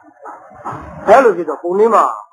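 Speech only: a man's voice preaching in Burmese with strongly rising and falling intonation, beginning softly and growing louder about a second in.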